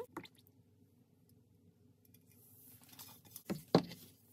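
Lye solution poured from a small steel pot into a bowl of oils: mostly quiet, then a soft liquid pour late on, ending in two sharp knocks near the end, the second one loud.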